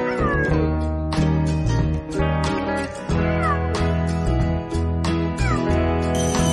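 Background music with a steady beat, over which a cheetah in a crate gives about four short calls that fall in pitch.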